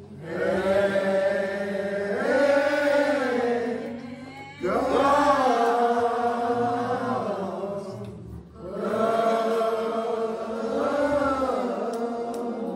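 A slow hymn sung in three long, drawn-out phrases, each lasting about four seconds, with a steady low hum held underneath.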